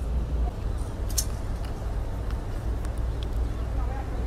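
Street background sound with a steady low traffic rumble and a few faint clicks.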